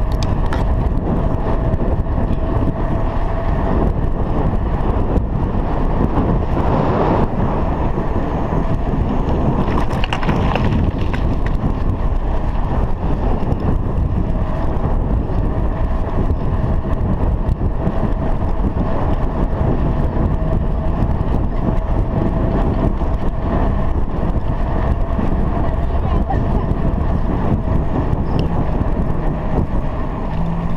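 Bicycle ridden along a paved road: a steady rush of wind and tyre noise on a chest-mounted action camera's microphone, with a faint steady hum that comes and goes.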